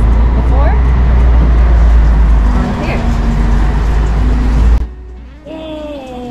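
A loud, steady low rumble under a woman's talking, cutting off abruptly near the end.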